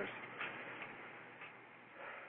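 Faint steady hiss with a few soft, scattered ticks.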